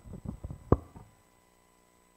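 Handling noise from a handheld microphone, with one sharp knock about three quarters of a second in as it is put down, after which the sound drops to near silence.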